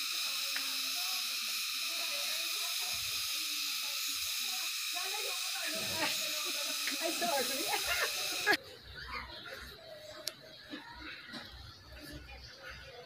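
A steady high hiss with faint voices under it, which cuts off suddenly about eight and a half seconds in, leaving a much quieter background with a single click near the end.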